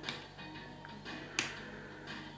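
Two sharp metallic clicks, one at the start and a louder one about a second and a half in, from a disc detainer pick turning the discs of a motorbike disc lock. Faint background music plays underneath.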